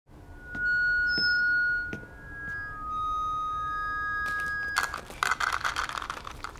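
A high, steady ringing tone that shifts pitch partway through, with a few faint clicks. About three-quarters of the way in, a crackling rattle of hard, dry pretzel pieces being poured from a bag into a bowl takes over.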